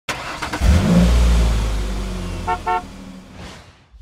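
Traffic sound effect: a car's low engine rumble and road noise that fade away, broken by two short car-horn toots about two and a half seconds in. A soft whoosh follows near the end.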